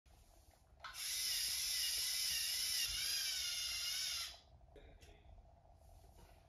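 A small electric motor whining at a high pitch. It starts about a second in, runs steadily with a slight waver in pitch, and cuts off after about three and a half seconds.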